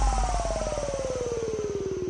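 Electronic background music: a synthesizer tone sliding steadily down in pitch over a fast, even pulsing buzz, a falling sweep that slowly fades.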